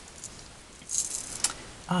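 A small plastic container of rhinestones being handled: a brief high rattle about a second in, ending with a click.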